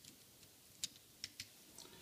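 A few faint, sharp clicks as a small weight is pressed and seated onto an N scale steam locomotive's chassis by hand. The loudest click comes a little under a second in.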